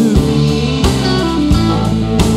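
Live rock band with electric guitar, bass guitar and drum kit playing an instrumental stretch between vocal lines, with drum hits about every two-thirds of a second.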